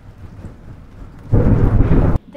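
Thunderstorm: steady rain falling, then a loud low rumble of thunder a little past halfway.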